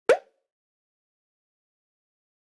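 A single short pop, a quick click with a brief rising blip, right at the start, then dead digital silence.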